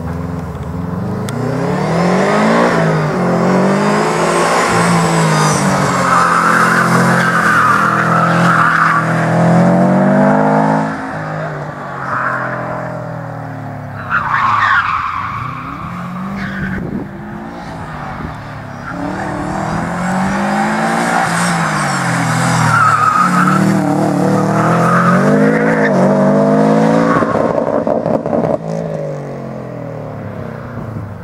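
Subaru Impreza WRX's turbocharged flat-four engine driven hard, revving up and dropping back again and again as it is thrown around a tight cone course. The tyres squeal several times in the turns.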